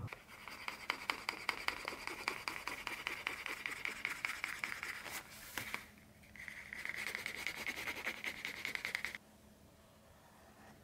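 Wooden edge slicker rubbed quickly back and forth along a leather edge, a scratchy rubbing in rapid strokes: hand-burnishing the freshly dyed edge. A short pause comes about six seconds in, then a second spell of rubbing that stops a little after nine seconds.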